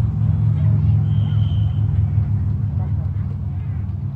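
A steady low rumble with faint voices in the background, and a brief high tone about a second in.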